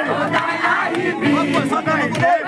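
A group of men shouting and chanting together in a traditional Garo dance, many voices overlapping, with some long sung notes among the shouts.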